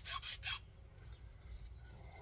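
Hand file rasping along the edge of a small wooden calliope bellows block, scraping off old hot hide glue: three quick short strokes that stop about half a second in.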